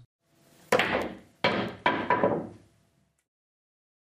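Pool jump shot: a sharp crack of the cue tip on the cue ball, then two hard clacks about three-quarters of a second and a second later as the cue ball drives into the 8-ball against the cushion and the balls kiss. Each hit rings briefly.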